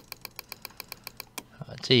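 A quick, even run of about a dozen small computer-control clicks, some eight a second, made while zooming in on a chart on screen. The clicks stop about a second and a half in.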